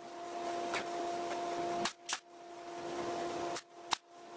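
Power drill driving screws into the cabinet's plywood backing panel: the motor runs in two spurts, each growing louder as the screw goes in and stopping short, the first about two seconds in and the second just before the end, with a click as each one stops.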